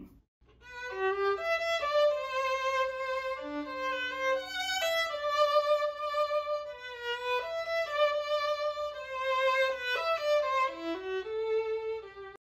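Solo violin playing the opening phrase of a ballad: a melody of held notes with vibrato, starting about half a second in, with a lower note sounding beneath it for a moment near the middle. It is played plainly, as a line to sing along with.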